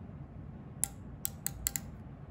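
Ratchet stop of a Mitutoyo depth micrometer clicking about five times in quick, uneven succession partway through, as the thimble is turned with the spindle rod down on the gauge step. The ratchet slipping is the sign that the rod is seated at the set measuring force for the reading.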